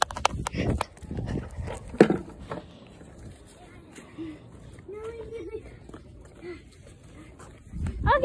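Knocks and rustling from a handheld phone being carried and jostled, with a sharp thump about two seconds in, followed by a few faint, short voice-like sounds.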